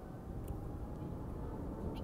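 Low, steady rumble of distant jet engines across the airport, with a faint steady whine and a single click about half a second in.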